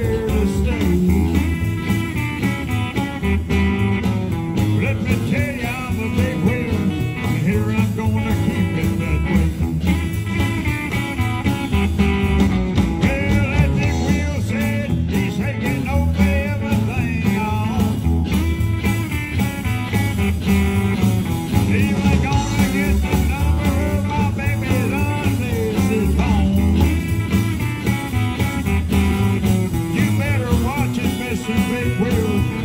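A live blues-tinged rock and roll band playing: two electric guitars over drums with a steady beat.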